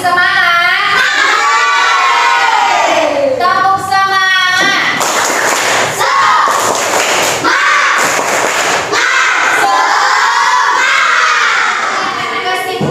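A class of young children chanting and shouting loudly together, the voices rising and falling in pitch, with a run of sharp claps or thumps about halfway through.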